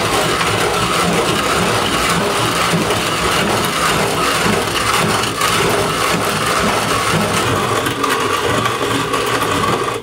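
Old hand-cranked coffee mill grinding whole coffee beans: a steady, dense crunching full of small cracks as the crank is turned.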